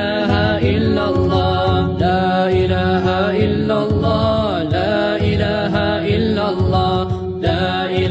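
An Islamic devotional chant (nasheed): a voice singing a slow, melismatic line with sliding, ornamented pitches over a steady low accompaniment.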